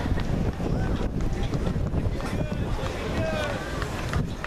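Wind buffeting the camera microphone with a steady low rumble, while spectators' voices call out in the background, more plainly in the second half.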